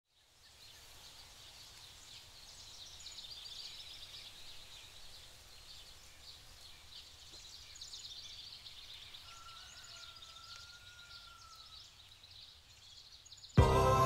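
Faint outdoor ambience of many small birds chirping at once, with one long thin whistle in the middle. Music starts abruptly just before the end.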